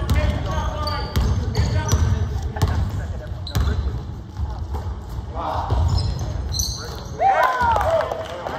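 Basketball dribbled on a hardwood gym floor, a string of bounces through the first half, with short high sneaker squeaks as players cut and stop. A player's voice calls out near the end.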